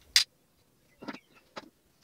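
Small plastic toy pieces clicking as they are handled: one sharp click just after the start, then two fainter clicks about a second and a second and a half in.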